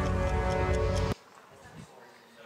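Short electronic ident music with a ticking beat that cuts off suddenly about a second in, leaving quiet room tone.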